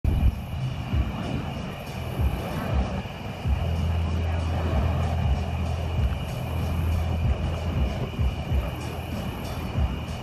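Burning fire poi whooshing in uneven swells as they are swung around, over a low rumble. A steady high-pitched two-note hum runs underneath throughout.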